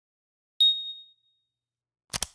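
A single high, bright ding about half a second in, ringing on and fading out within a second: a logo sound effect for the channel's intro card.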